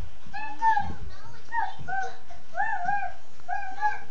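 A high-pitched, child-like voice making short syllables that rise and fall, one every half second or so, with a soft thump about two-thirds of a second in.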